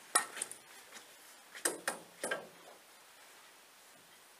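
A few hard clicks and knocks of snooker equipment on the table: a cluster just after the start, then three more a little before the middle.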